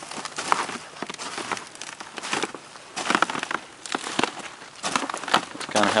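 Irregular crinkling and crackling with scattered clicks: foam packing peanuts in a netted drain tube being handled.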